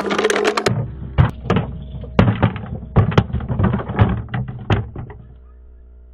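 Plastic toy pickup truck knocking and clattering against rock as it tumbles down a stone slab: a string of irregular knocks over about four seconds that thins out and fades near the end.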